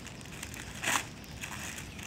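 A patterned gift bag crinkling as it is handled, with one short, louder rustle about a second in.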